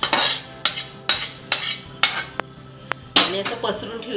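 A steel spoon scraping a thick cooked pumpkin and jaggery mixture out of a pan into a stainless steel bowl. It goes as a series of short scrapes, then two sharp metal clinks about two and a half and three seconds in, then a longer scrape.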